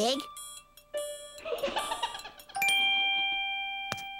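Bell-like chime notes in a cartoon's background music. A higher note rings through the first second, a lower one follows, and another chime is struck about two and a half seconds in and rings on.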